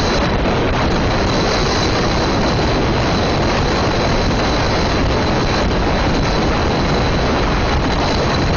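Loud, steady rush of wind over the microphone of a camera on a car moving along a road, with the car's road noise beneath it.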